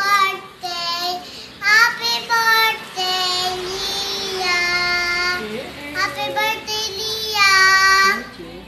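A young girl singing solo, in phrases with long held notes, the longest a wavering note about three seconds in.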